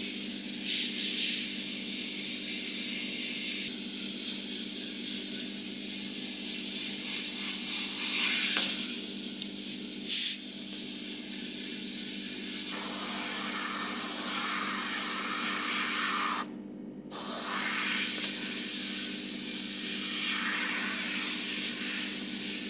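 GAAHLERI Mobius dual-action airbrush spraying paint at 0.12 MPa: a continuous hiss of air and paint that swells and eases as the lines are drawn, with a brief louder burst around the middle. The air cuts out for about half a second around three quarters of the way through, over a steady low hum.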